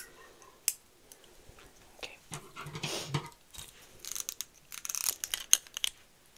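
Hair-cutting scissors snipping close to the microphone, with a short rustle of handling a couple of seconds in and then clusters of quick, crisp snips in the last two seconds.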